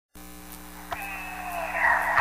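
Steady electrical mains hum with a single click about a second in. A slowly falling tone then fades in and grows louder toward the end.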